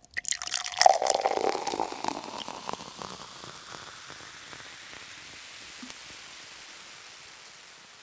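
Intro sound effect: a quick flurry of clicks and splashy noise, densest about a second in, settling into a soft hiss that fades away near the end.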